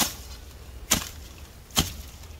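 A hand hoe chopping into dry, matted weeds and soil. Three sharp strikes come a little under a second apart.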